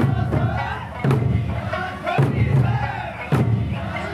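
Traditional Okinawan Eisa performance: a big drum struck about once a second, with loud group shouts of the dancers' calls and singing between the beats.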